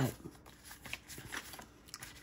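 Faint rustling of small paper sticker sheets being handled and flexed, with a few light papery ticks about half a second apart.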